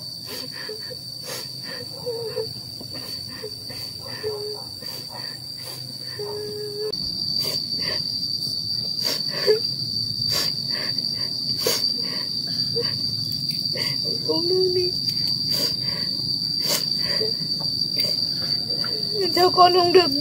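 Insects chirring, one steady high-pitched drone, with faint scattered clicks. The overall sound grows somewhat louder about seven seconds in.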